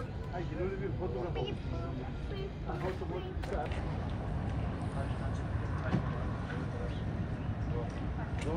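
Outdoor ambience: people's voices talking on and off over a steady low rumble of background noise.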